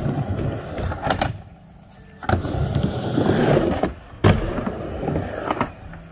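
Skateboard wheels rolling across a ramp, with sharp clacks of the board hitting the ramp about a second in and again about four seconds in, and a brief lull in between.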